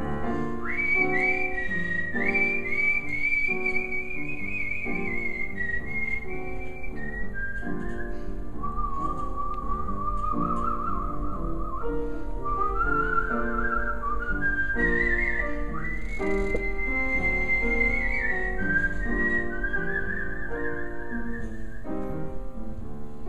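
A concert whistler whistling a melody into a microphone, with a wavering vibrato on held notes, over instrumental accompaniment. The whistled line enters about a second in, dips lower midway and climbs high again.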